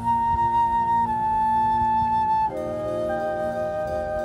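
Marching band show music: a high woodwind melody holds a long note and steps down once, over a steady low sustained note. About two and a half seconds in, it gives way to a quieter chord of several held notes.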